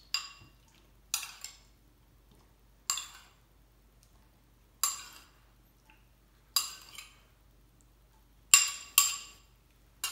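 Metal spoon clinking against a small porcelain bowl while sauce is spooned out of it: about seven separate clinks at uneven intervals, each ringing briefly. The loudest two come close together near the end.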